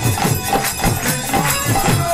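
Kirtan music between sung lines: a mridanga drum beating a steady rhythm with harmonium and electric bass guitar underneath.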